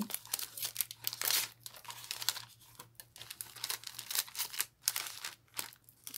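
Clear plastic bags crinkling in irregular crackles as they are handled.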